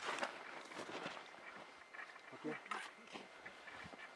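Quiet stretch of soft scattered rustles and crunches, with a brief faint voice about two and a half seconds in.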